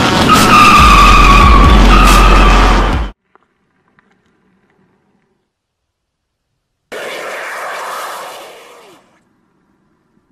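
Car tyres squealing loudly over a low hum for about three seconds, then cut off suddenly. After a few seconds of silence, a rushing noise rises and fades away.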